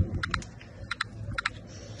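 Three quick pairs of sharp, light clicks, about half a second apart, over a steady low background rumble.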